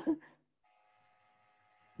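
A man's voice trails off in the first moment, then near silence with a faint steady multi-tone whine. A laugh starts right at the end.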